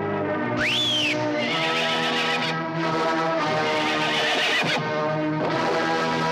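A horse whinnies once, about half a second in, a high call that rises and then falls, over a film's background score that plays throughout.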